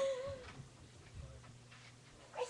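A girl's short, wavering, high-pitched laugh, about half a second long, right at the start, followed by faint room noise.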